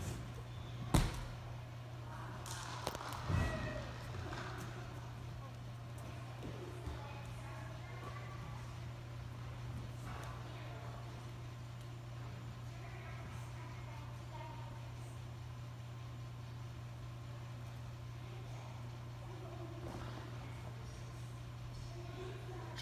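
A gymnast's feet land on a balance beam with a sharp thump about a second in, followed by a second, softer thud a couple of seconds later. A steady low hum and faint distant voices run underneath.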